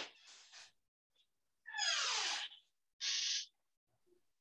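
A faint click, then two short hissing, rustling noises picked up through a video-call microphone, about two and three seconds in: the first sweeps down in pitch, the second is a steadier hiss. They come from someone getting up and leaving an office chair.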